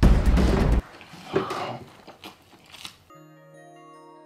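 Background music with a heavy bass cuts off abruptly under a second in. Quiet eating sounds follow: a fork working noodles on a metal baking tray, with chewing and small clicks. Near the end comes a steady low held tone lasting just over a second.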